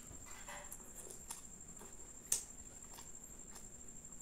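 Close-up chewing of a mouthful of laccha paratha with paneer butter masala: soft wet mouth clicks and smacks, with one sharp click a little past halfway.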